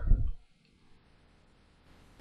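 A short, soft low thud as a plastic water bottle is set down on a towel-covered table, then near silence.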